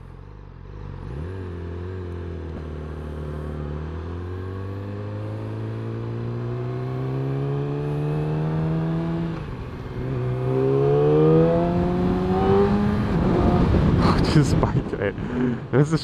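Yamaha R6's 600 cc inline-four engine under way. After a steady first second its pitch climbs slowly for about eight seconds, drops briefly at a gear change, then climbs again in the next gear. The sound turns rougher and noisier near the end.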